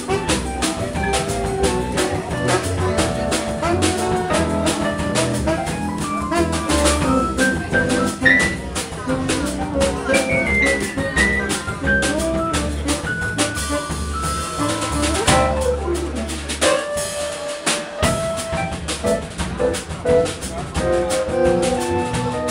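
Live jazz combo of electric keyboard, upright bass and drum kit playing a samba-style instrumental, the drums keeping a steady beat under a moving melody line. About three-quarters of the way through, the low bass drops out for a second before the groove carries on.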